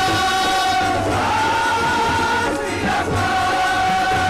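Shabad Kirtan sung by a large group of Sikh ragis in unison, holding long notes over harmonium accompaniment. The melody slides up to a higher held note about a second in and comes back down about three seconds in.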